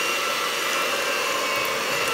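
Electric hand mixer running steadily, its beaters whisking a lump of butter in a bowl.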